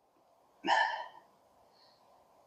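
A woman's short breathy vocal sound, a single huff of breath lasting about half a second, a little over half a second in.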